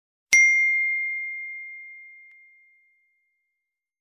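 A single bright bell ding, the notification-bell sound effect of a subscribe-button animation, struck once about a third of a second in and ringing out over about two and a half seconds.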